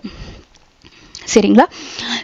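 A woman's short spoken syllable, then a quick breath drawn in through the nose near the end, a brief airy hiss just before she speaks again.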